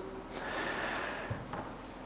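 A man drawing a breath in close to the microphone: a soft rush of air lasting about a second.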